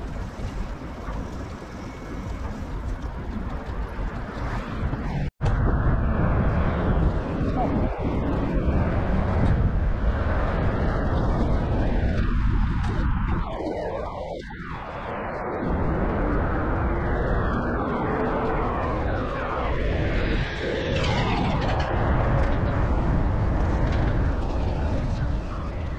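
Heavy wind rumble on the microphone of a camera riding on a moving bicycle, mixed with the noise of city street traffic. It breaks off for an instant about five seconds in and comes back louder.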